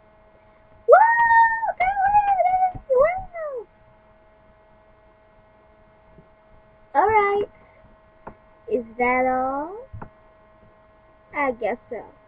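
A high-pitched voice making wordless squeals and swooping play-voice sounds in four short bursts, over a steady electrical hum.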